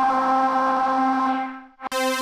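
Ableton Live's browser auditioning synth lead presets: a breathy, flute-like synth note held for under two seconds and fading out, then a click and a brighter synth note at the same pitch starting near the end.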